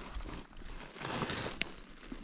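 Stones and gravel scuffing and clicking as someone moves among the rocks by hand, with one sharp click about a second and a half in.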